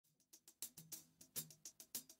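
Near silence with a few faint, short percussive taps, irregularly spaced about a third of a second apart.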